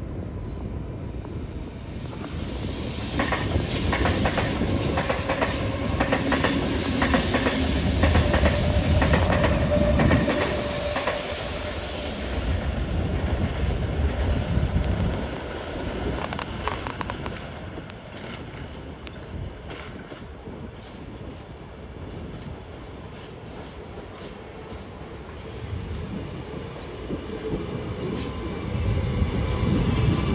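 Trains running over the rails. A loud stretch of rumbling with rapid wheel clicks runs through the first ten seconds or so and then cuts off. After it comes an Alstom Metropolis metro train's wheels clicking over the points, its sound rising as it draws up alongside the platform near the end.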